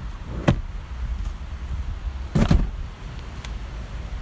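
Toyota Celica's front seat being released and tipped forward to open the way to the rear seats: a sharp latch click about half a second in, then a heavier clunk around two and a half seconds as the seat moves and stops.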